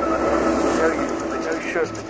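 Electronic dance track in a breakdown with the kick drum dropped out, leaving sustained synth pad tones; a spoken voice comes in over the pad about one and a half seconds in.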